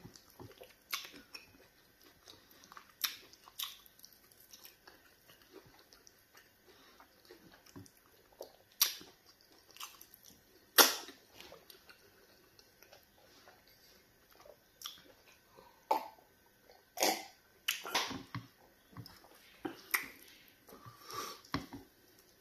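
Close-miked eating sounds from a mouthful of pounded yam fufu and egusi soup: scattered wet smacks and clicks of chewing and swallowing. The sharpest smack comes about eleven seconds in, and a quick run of them comes near the end.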